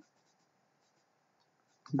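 Faint scratching of a stylus on a drawing tablet as letters are handwritten, barely above near silence.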